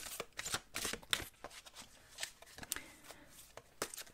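Enchanted Map Oracle cards shuffled by hand: soft, irregular clicks and slaps of card on card, busiest in the first second or so, then sparser.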